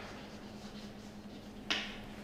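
Chalk writing on a blackboard: faint scratching strokes, then one sharp tap of the chalk on the board near the end, over a faint steady low hum.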